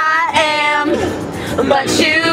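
Several young women singing loudly along with a pop song, holding long notes, inside a car's cabin.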